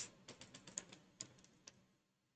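Faint, irregular keystrokes on a computer keyboard: a handful of light taps, thinning out towards the end.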